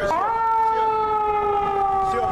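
A passing vehicle's siren: a loud chord of long held tones that steps up in pitch just after the start, then sags slowly lower as the vehicle goes by.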